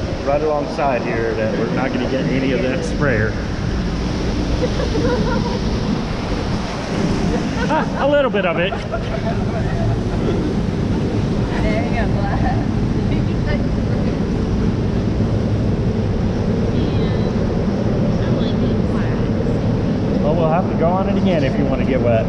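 Rushing, churning water around a round river-rapids raft, with wind on the microphone, running steadily throughout. Voices of riders and people nearby cut through now and then, loudest about eight seconds in and again near the end.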